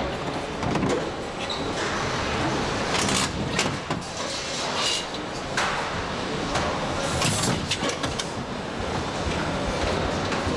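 Car-factory assembly-line noise: a steady din of machinery with short hisses and knocks scattered through it every second or so.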